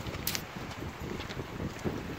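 Wind buffeting the microphone, a steady low rumbling noise, with one brief sharp click about a quarter second in.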